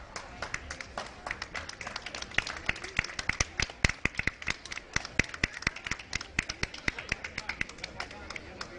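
A rapid, irregular series of sharp taps, about eight a second, loudest in the middle of the stretch.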